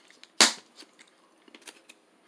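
A single sharp snap of a bar of dark chocolate about half a second in, followed by a few faint clicks.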